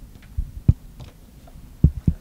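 Handheld microphone handling noise: a few dull low thumps as the microphone is moved and knocked about on the podium, two of them louder, about two-thirds of a second in and near the end.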